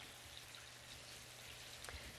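Faint, steady sizzle of breaded green tomato slices frying in shallow hot oil in a skillet.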